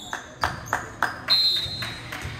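Four sharp knocks about a third of a second apart, then a referee's whistle blown once for about half a second, the loudest sound, echoing in a large gymnasium.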